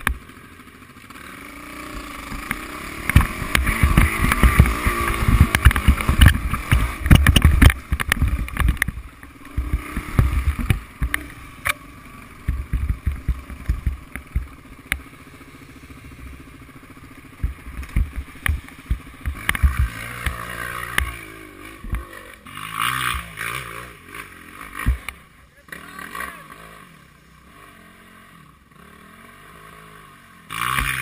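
Off-road motorcycle engine revving up and down on a rough trail, with knocks and rattles from the bumps and wind buffeting the on-board microphone, loudest a few seconds in and easing off towards the end.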